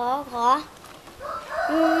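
Children's voices: one child whining a pleading 'ขอ ขอ' (give me, give me) in short wavering syllables, then a long drawn-out 'อืม' from about a second and a half in.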